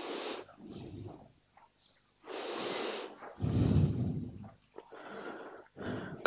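A man breathing slowly in and out close to a microphone: a few soft, breathy swells of air.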